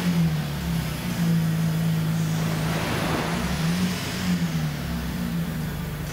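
2007 GMC Acadia's 3.6-litre V6 engine running at idle, a steady hum whose pitch rises briefly a couple of times.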